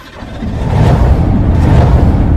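Deep rumbling intro sound effect that swells up over the first half-second or so and then holds loud.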